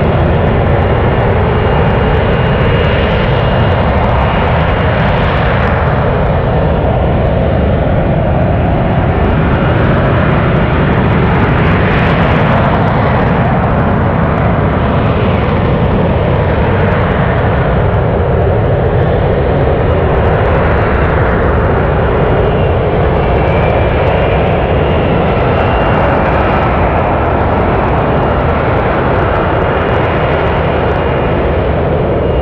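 Lockheed Martin F-35B stealth fighter's Pratt & Whitney F135 jet engine running loud and steady as the jet flies slowly with its gear down. Its tone sweeps slowly up and down every few seconds.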